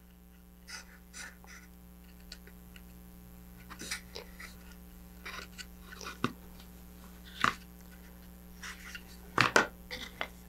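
Faint handling noise: soft rustles and small clicks as hands thread a shock cord through a loop in a model rocket's cardboard tube coupler, over a steady low electrical hum.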